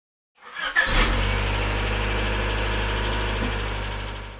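A car engine starting, then idling steadily, beginning to fade out near the end.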